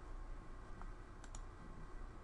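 Quiet clicks of a computer mouse: one faint click, then two quick sharp clicks about a second and a quarter in, over a faint low hum.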